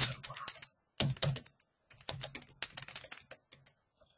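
Typing on a computer keyboard: quick runs of key clicks broken by short pauses, one near the start and another just before the midpoint.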